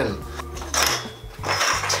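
A steel bike seatpost scraping and rattling as it slides in the seat tube, in a couple of rough bursts. The seat clamp is fully loosened, so the post moves and falls in freely.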